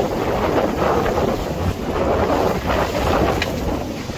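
Wind buffeting the microphone over the rush and slosh of choppy water along the hull of a Hawk 20 day-sailer under sail, swelling and easing with the waves.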